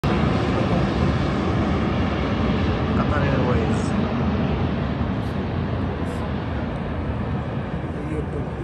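Jet airliner passing low overhead: a loud, steady engine roar that slowly fades as the plane moves away.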